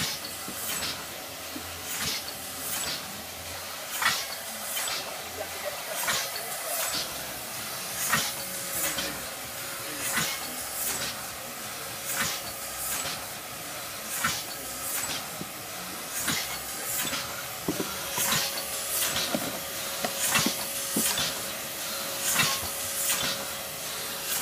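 Comadis C170T automatic tube filling machine running: short hissing bursts of air, roughly twice a second, with a steady mechanical clatter and a faint steady tone underneath.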